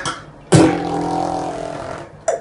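Beatboxed mouth sounds: a sharp hit about half a second in, then a held pitched note, like a plucked bass string, that fades over about a second and a half.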